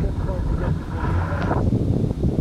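Wind buffeting the microphone over water rushing and splashing past the hull of a small sailboat moving fast under sail.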